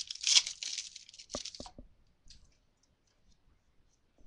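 The wrapper of a trading card pack being torn open and crinkled, a dense crackling rip that peaks just after the start and fades out over the first second or so. It is followed by three short sharp clicks, then quiet.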